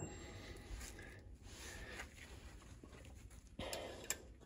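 Faint rustling and light taps of gloved hands fitting a C-clamp valve spring compressor over a valve on a cylinder head, a little louder near the end.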